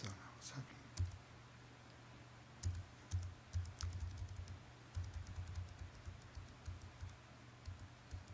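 Computer keys pressed repeatedly to page through presentation slides: a few clicks near the start and about a second in, then a dense, irregular run of light clicks with dull knocks on the lectern from about two and a half seconds in until shortly before the end.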